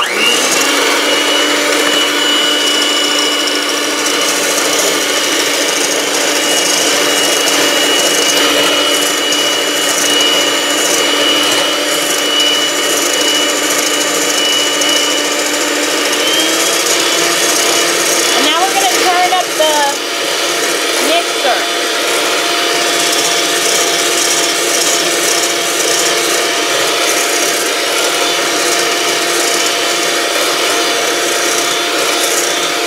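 Electric hand mixer with a whisk attachment switching on and running steadily, whipping foamy egg whites with sugar in a stainless steel bowl. Its motor pitch steps up about 16 seconds in.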